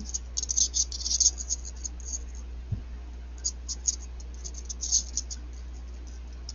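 Thin copper craft wires (20 and 26 gauge) rubbing and ticking against each other and the fingers as they are handled, a run of faint scratchy clicks in two clusters.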